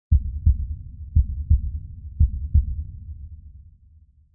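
Heartbeat sound effect: three low double thumps, lub-dub, about a second apart over a low rumble. The rumble fades away toward the end.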